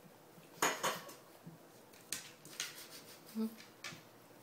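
Glass wine bottle knocking and clinking against a hardwood floor as a dog paws and noses it. A handful of sharp knocks, the two loudest close together just over half a second in, more about two seconds in and near the end.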